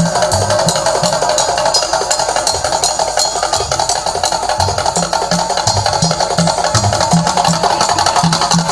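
Loud live traditional percussion music: a low drum beat pulsing under fast, dense clattering of struck wooden instruments.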